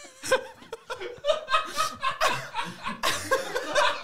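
Several men laughing together in repeated bursts.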